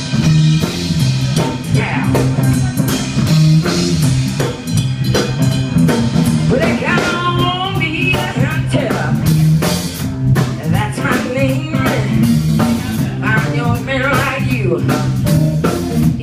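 Live blues band playing, with electric guitars, a drum kit and a steady, repeating bass line. Sung vocals come in about six seconds in.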